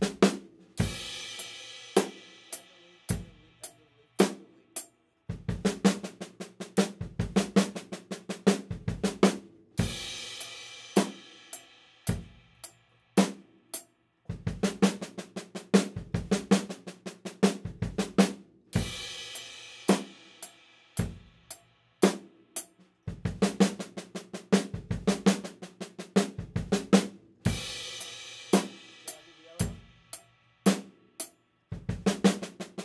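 Drum kit played slowly: a one-measure fill of bass-drum doubles and snare strokes. It repeats about every nine seconds, each time ending on a cymbal crash, with sparser single hits between.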